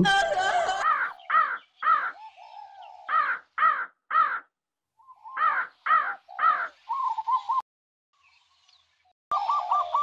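Crows cawing: a run of short caws, about two a second, with a brief pause in the middle.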